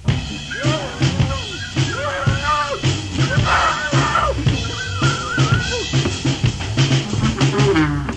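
Band music: a drum-kit beat with a bass line and a lead melody that slides up and down in pitch, kicking in abruptly after a brief drop-out.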